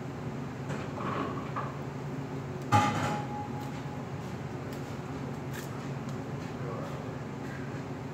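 A steady low hum of kitchen machinery, broken about three seconds in by one loud clank that rings briefly with a metallic tone.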